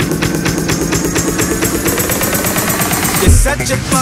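Electronic dance music build-up: a rapid drum roll that speeds up under a rising synth tone, then the drop lands a little over three seconds in with heavy deep bass.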